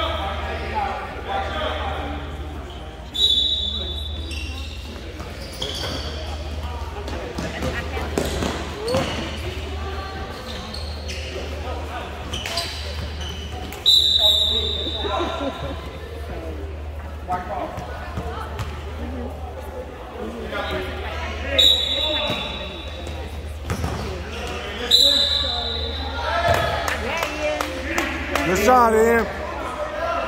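Basketball game in a gym: a ball bouncing on the hardwood floor and players' and spectators' voices echoing in the hall, with a steady low hum beneath. Sharp short high tones sound four times, about 3, 14, 21 and 25 seconds in.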